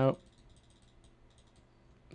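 Faint, light clicking from a computer keyboard and mouse, a few scattered soft ticks in a quiet room, after the last word of a sentence at the very start.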